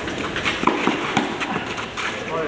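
Tennis players' quick footsteps and shoe scuffs on a clay court, with a loose run of short knocks about every quarter second.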